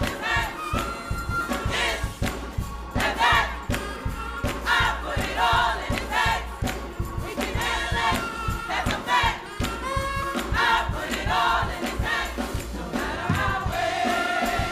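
Gospel choir singing with a steady beat, the singers clapping along.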